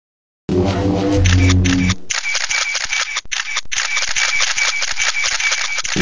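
Logo intro sound effects: a short musical chord for about a second and a half, then a rapid run of camera shutter clicks in the manner of a crowd of press photographers, with a high tone pulsing evenly behind them.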